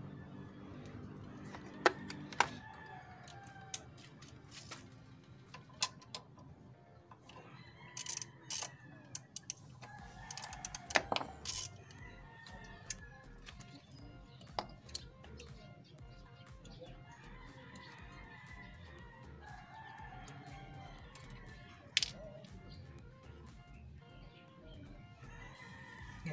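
Sharp clicks and taps of metal and plastic as the front-wheel ABS sensor of a Yamaha NMax V2 scooter is unbolted and worked out of its mount by hand. The loudest clicks come about two seconds in, around eleven seconds and near the end. Drawn-out bird calls sound faintly in the background a few times.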